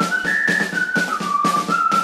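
Song intro: a whistled melody stepping between a few notes over a light, steady percussion beat.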